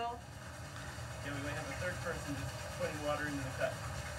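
Faint, indistinct voices over a low background rumble.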